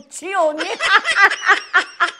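A woman laughing: a short rising and falling vocal sound, then a run of quick, pulsing laughs.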